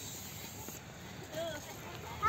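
Low, steady outdoor background noise with one brief faint vocal sound about a second and a half in.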